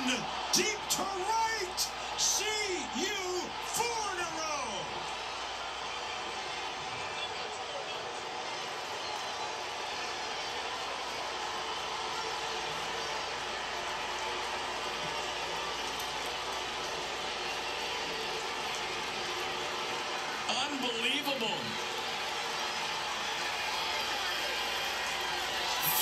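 Ballpark crowd noise from a televised baseball game after a home run, heard through a TV speaker: a steady wash of crowd sound. Voices rise and fall over the first few seconds, and a brief voice comes about twenty seconds in.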